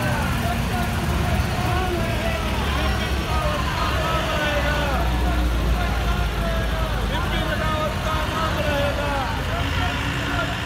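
Convoy of army trucks driving slowly past, their engines a steady low rumble, under the chatter of many onlookers' voices.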